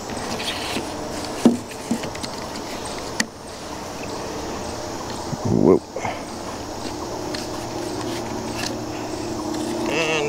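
A few light knocks of a wooden rafter being shifted into place on a shed's timber roof frame, with one louder sound about five and a half seconds in, over steady outdoor background noise.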